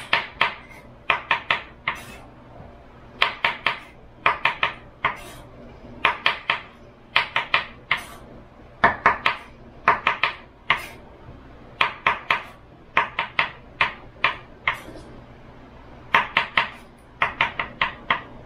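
Kitchen knife slicing mushrooms on a wooden cutting board: quick runs of three to five sharp knocks as the blade hits the board, with short pauses between runs.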